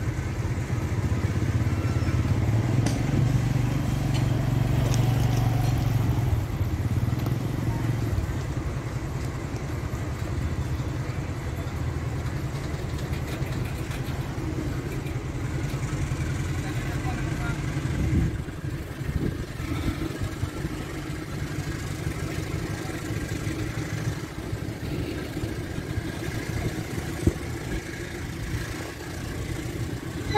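Container freight train wagons rolling past on the rails, a steady rumble and clatter of wheels on track. The low rumble is heavier in the first few seconds, and there is one sharp knock about two-thirds of the way through.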